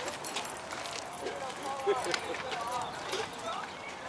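Faint voices of players and onlookers talking and calling around a ball field, with a few light taps mixed in.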